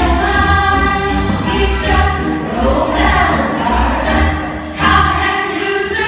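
Young cast singing a stage-musical number together over accompaniment with a steady low beat.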